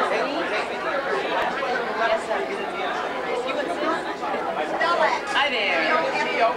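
Several people talking at once: steady, overlapping chatter with no music playing.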